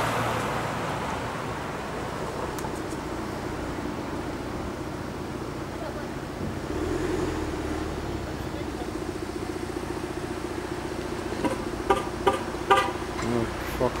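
Street traffic noise: a steady hum of road vehicles, swelling briefly as one passes about halfway through.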